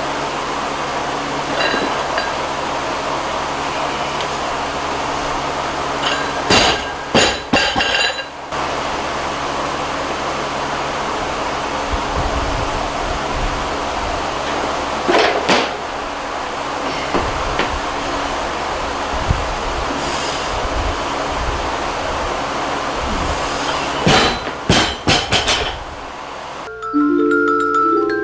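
A loaded barbell with bumper plates is dropped onto the lifting platform after lifts, giving a quick series of bangs and bounces. This happens three times: about a quarter of the way in, around the middle, and near the end. Between drops there is a steady hiss.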